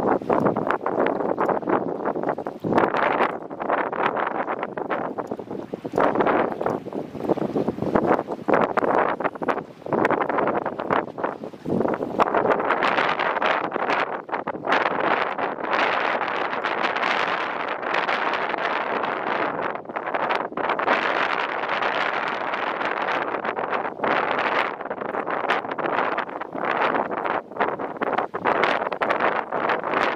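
Gusty wind buffeting the microphone, rising and falling in uneven gusts.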